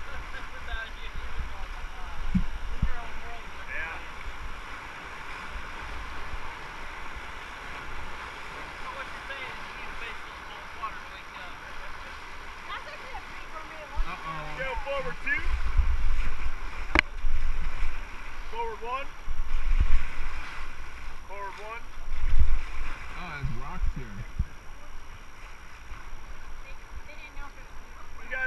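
Steady rushing of river water through a riffle around an inflatable raft, with wind buffeting the microphone in low gusts, loudest in the second half. One sharp click sounds about halfway through.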